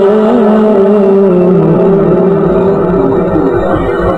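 A man's voice reciting the Quran in a long, held melismatic tone that wavers slowly in pitch, weakening in the second half as a low rumble rises beneath it.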